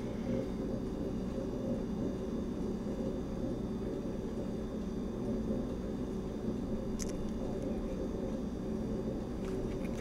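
Steady low hum and rumble of background room noise, with one faint click about seven seconds in.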